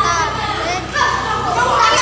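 Children's voices: a boy speaking, with other children talking and calling out around him. A voice is held and raised from about a second in.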